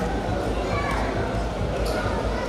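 Many people talking at once at a crowded meal in a large hall, over a steady low thumping beat.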